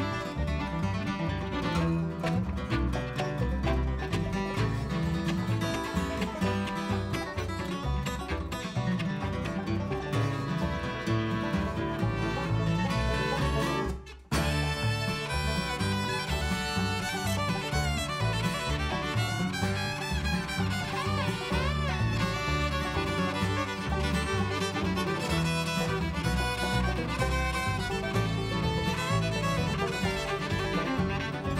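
Bluegrass string band playing an instrumental break on acoustic guitar, fiddle, banjo and upright bass, with no singing. The acoustic guitar leads first; the band stops dead for a moment about halfway, then the fiddle takes the lead with sliding, wavering notes.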